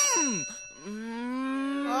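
A short bright bell-like ding at the very start, then a long wordless moaning groan from a performer's voice, held for about two seconds, rising a little and then sliding down at the end: a mimed answer that his throat is sore.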